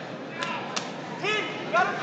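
Two sharp slaps about a third of a second apart, followed by shouting voices.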